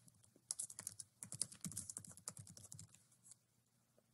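Faint computer keyboard typing: a quick run of key clicks lasting about three seconds, stopping shortly before the end.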